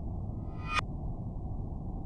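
Horror-film score: a low rumbling drone with a pinging swell that builds and then cuts off sharply, repeating about every two seconds.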